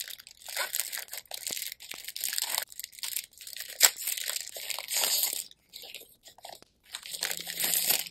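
Clear plastic packet of paper prints crinkling as it is handled, in several bursts with brief pauses, and a sharp click about four seconds in.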